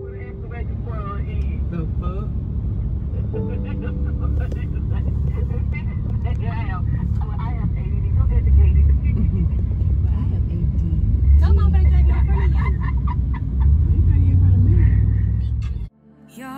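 Car cabin noise while driving: a steady low rumble from the engine and road, heard from inside the vehicle, with faint voices underneath.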